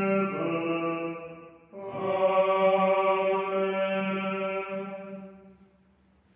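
Liturgical plainchant sung on long held notes, with a brief break in the middle and a long final note that fades away near the end.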